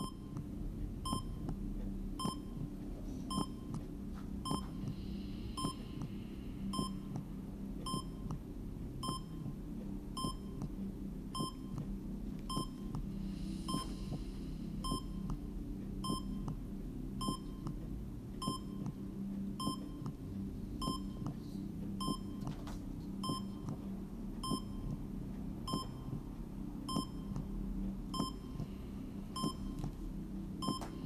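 Short electronic beeps repeating evenly, just under two a second, over a steady low hum.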